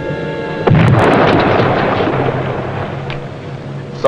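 A depth charge exploding underwater: a sudden heavy blast under a second in, dying away over the next two to three seconds, over background music with held notes.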